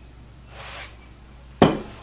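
A short sniff, then about a second later a single sharp clink of a metal spoon knocked against a glass serving bowl, ringing briefly.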